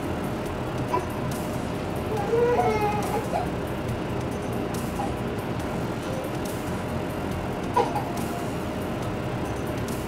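Steady background hum, with a baby's short wavering coos about two to three seconds in and a brief one near eight seconds.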